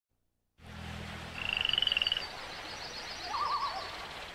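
Marsh wildlife sound effects over a low steady hum: a bird's rapid trill, then a run of faint high chirps and a short warbling call near the end.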